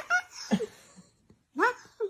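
Domestic cat meowing in protest at being held up: three short cries, each rising in pitch.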